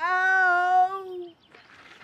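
A child's long, held wailing cry lasting just over a second, slightly rising in pitch, then trailing off: a child crying out after being hurt.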